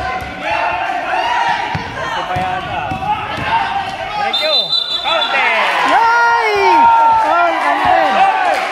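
Basketball game in a gym: a ball bouncing on the court amid players' and spectators' shouting voices, with short high squeaks around the middle.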